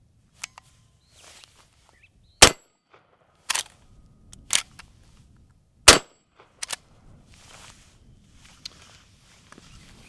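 Two shots from a Henry Axe .410 lever-action short-barreled shotgun, about three and a half seconds apart, with two lighter clacks between them as the lever is worked to chamber the next shell.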